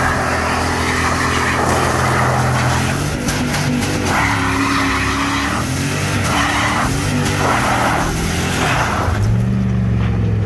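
Dodge Ram 2500 pickup doing a burnout: the engine revs hard, its pitch rising and falling, while the spinning rear tyres screech in repeated bursts.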